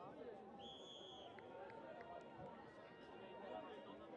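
Faint, overlapping voices of players and onlookers calling across a rugby pitch, with one short, steady whistle blast about half a second in.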